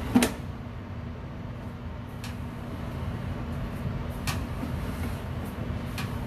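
Sewer inspection camera being pushed down a drain pipe: a steady low hum and rumble, broken by sharp knocks as the camera head and push cable bump the pipe. The loudest knock comes right at the start, with smaller ones about two and four seconds in.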